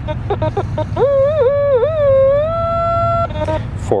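Teknetics T2 Classic metal detector sounding on a buried target: a few quick short beeps, then a long tone about a second in that wavers in pitch as the coil moves, settles on one steady pitch and cuts off abruptly. The tone marks the coil centred over a clad dime about four inches down.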